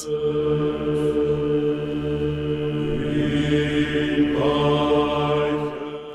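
Chanting voices holding long, steady notes over a low drone, with more voices joining about three seconds in and again just past four seconds.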